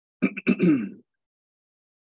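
A man clearing his throat: a few short rasps followed by a falling voiced sound, all over within about a second.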